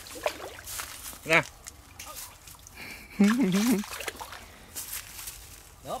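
Water sloshing in short, scattered splashes around a man wading chest-deep through a muddy canal.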